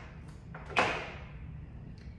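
Rose stems and foliage being handled and pushed into a flower arrangement, with one sudden sharp rustle or snap about a second in that fades quickly.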